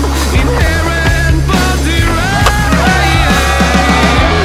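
Music soundtrack with skateboard sounds over it: wheels rolling on pavement and sharp knocks of the board, the clearest about two and a half seconds in.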